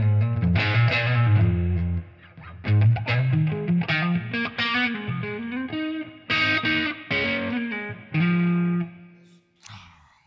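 Electric guitar tuned way down, played on the neck pickup through a fuzz: a distorted riff of low, sustained notes and chords in short phrases, dying away near the end.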